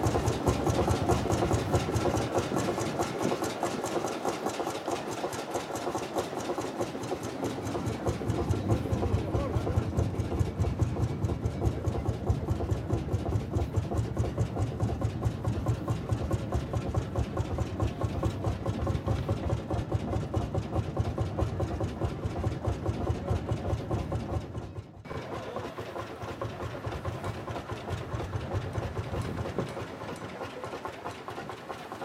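Vintage diesel tractor engine idling with a steady, rapid, even knock, briefly dipping once about three-quarters of the way through.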